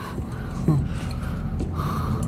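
A person breathing in with a gasp, with a brief voiced sound about two-thirds of a second in and a breathy rush near the end, over a low steady background hum.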